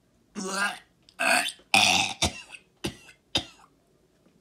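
A man's throaty vocal sounds, like burps: three longer bursts about half a second apart, then a few shorter, sharper ones.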